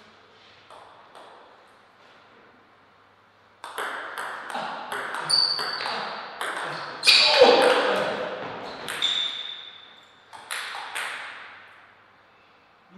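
Table tennis ball in play: a few light bounces at first, then from about three and a half seconds in a quick run of sharp clicks as the ball is struck by the paddles and bounces on the table. A person's voice is heard over the clicks around the middle.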